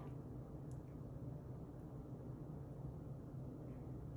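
Quiet room tone: a steady low hum, with one faint tick under a second in.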